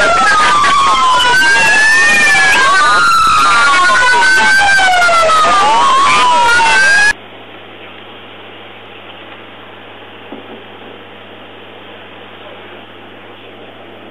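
Police car sirens on wail, two of them overlapping with slow rising and falling tones, loud until they cut off suddenly about seven seconds in. After that only a quiet steady hum and hiss remains, with one small click.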